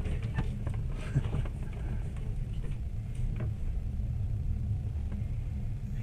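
Steady low rumble in a stopped train carriage, with a few faint clicks.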